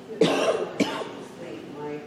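A person coughing twice in quick succession, the first cough a little after the start and the second just before one second in, louder than the quiet talk in the room around them.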